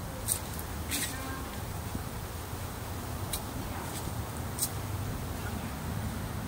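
Steady low outdoor rumble with four sharp clicks spread through it.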